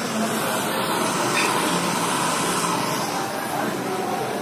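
Butane kitchen torch flame hissing steadily as it caramelizes the sugar top of a crème brûlée.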